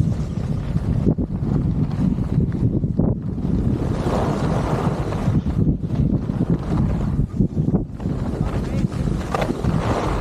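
Heavy wind noise buffeting the microphone of a camera carried by a skier moving fast downhill, mixed with the skis running over packed snow.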